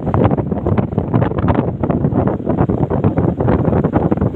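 Wind buffeting the microphone from a moving vehicle: a loud, steady, fluttering rush with low rumble.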